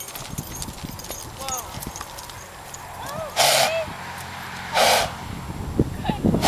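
Horse's hoofbeats on grass as a loose Saddlebred slows from a trot and stops. Two short, loud, breathy bursts come in the second half, about a second and a half apart.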